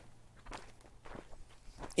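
Faint footsteps of a person walking, a few soft steps about every half second.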